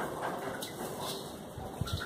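Faint rustling and small clicks of dry bran and debris from a mealworm culture being picked through by hand on a mesh sieve, with a couple of sharper clicks near the end.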